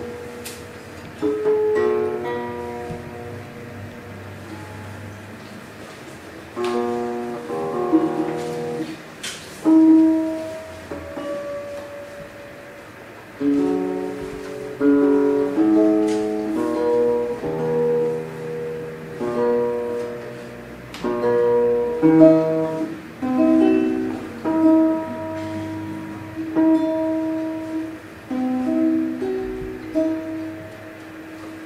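Two acoustic guitars playing a classical duet, plucked notes in flowing phrases with pauses between them.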